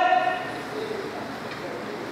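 A man's voice through a microphone and hall speakers, holding the end of a word that stops just after the start, followed by a pause filled with the hall's background noise and a faint brief voice.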